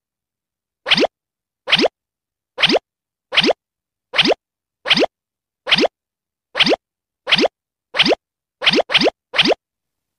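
An edited-in cartoon pop sound effect, a short bloop that rises quickly in pitch, repeated about a dozen times with dead silence between, coming faster near the end.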